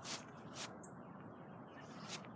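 Faint footsteps on dry grass, two steps about half a second apart, with a brief high chirp just after them.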